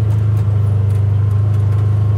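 Side-by-side utility vehicle's engine running with a steady low drone as it drives along, heard from inside its cab.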